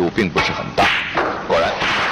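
A man speaking in broadcast commentary, broken by one sharp click a little before halfway, then a steady hiss-like background near the end.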